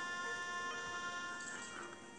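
Bagpipe music: steady drones under held chanter notes, getting quieter near the end.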